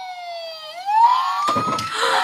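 Paw Patrol Ultimate Rescue Fire Truck toy's electronic siren wailing, its pitch sliding down and then back up in one slow sweep. A brief rattle comes about one and a half seconds in.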